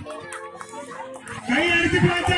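Several children's and adults' voices talking and calling out over one another, with a louder call rising above them about one and a half seconds in.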